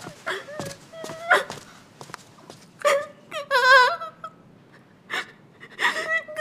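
A woman sobbing: sharp gasping breaths and a quavering, whimpering cry about halfway through.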